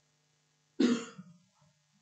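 A single short cough a little under a second in, picked up by a meeting-room microphone over a steady low electrical hum.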